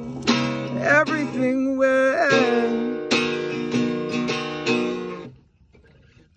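Acoustic guitar strummed by hand, with a voice singing a wavering line over it for the first two seconds or so. Then a chord rings on and dies away to near silence shortly before the end.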